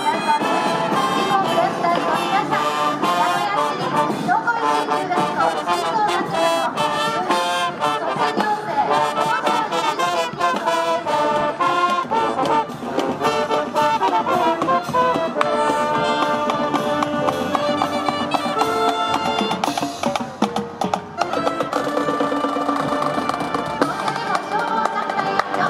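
Marching band playing on the march: trumpets and trombones lead the tune over drums, with sousaphones and woodwinds in the band. The music dips briefly about twenty seconds in.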